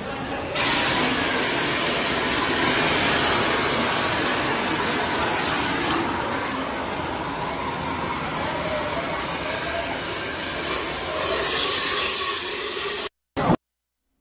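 Loud steady hissing rush on an amateur phone recording of a hospital elevator fire, with faint voices underneath. It cuts off abruptly about a second before the end.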